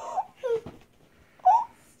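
A young girl's short, muffled cries of excitement through the hand over her mouth: three brief whimpers, the loudest about one and a half seconds in.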